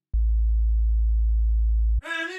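Sub-bass sine tone from a synth in a future bass track, a deep low note held steady. It starts just after the beginning and cuts off abruptly.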